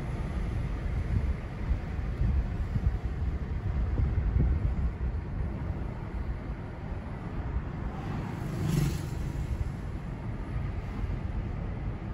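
Road and engine noise heard inside a moving car's cabin: a steady low rumble, with a brief louder swell about nine seconds in.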